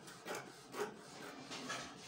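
Tailor's scissors cutting through printed dress fabric, a few short snips about half a second apart.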